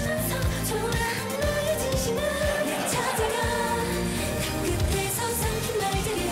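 K-pop girl group singing a pop song live into handheld microphones over a backing track with a steady drum beat.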